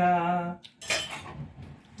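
A short clatter of kitchenware being handled, about half a second in, after the end of a drawn-out spoken word.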